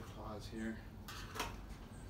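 A short spoken word, then a single sharp knock about one and a half seconds in, over a low steady room hum.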